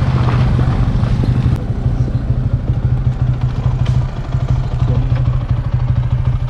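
Engine of a moving vehicle running steadily, a constant low drone with rumble underneath.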